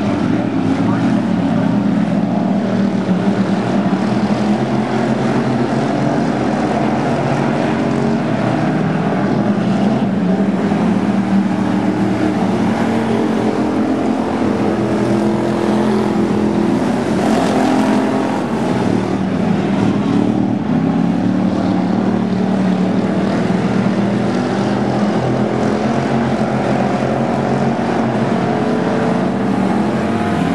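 A pack of Factory Stock dirt-track race cars running together at speed, several engines at once making a loud, continuous drone whose pitch rises and falls as the cars pass.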